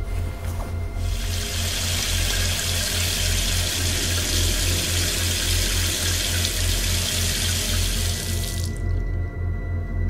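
Tap running steadily into a bathroom sink, turned on about a second in and cut off shortly before the end, over a low, pulsing music drone.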